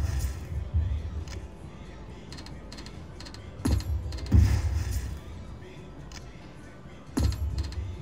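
Video slot machine playing two spins, one about halfway through and one near the end, each opening with a low thump and a burst of reel-spin sound effects. The machine's music and casino background noise run underneath.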